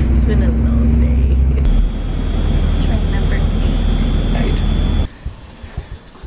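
Inside a passenger train: the steady low rumble of the running train, with a thin, steady high whine joining about two seconds in. The sound cuts off abruptly about five seconds in, leaving much quieter room sound.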